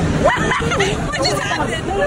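Several people talking over one another: a babble of voices with no other distinct sound.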